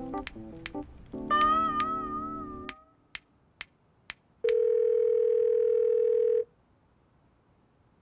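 A music phrase ends on a held, wavering note. After three ticks about half a second apart, a steady electronic tone sounds for about two seconds and then cuts off.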